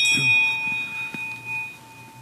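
A single bell strike: a clear metallic ring with several high overtones that fades away over about two seconds.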